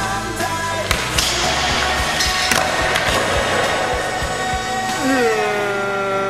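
Skateboard wheels rolling on a smooth floor with a sharp clack of the board about a second in, heard under a music soundtrack.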